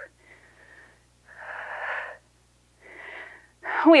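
A woman breathing hard through her mouth, winded by exertion: three breaths in a row, the middle one the loudest, each with a faint whistle in it. A spoken word starts right at the end.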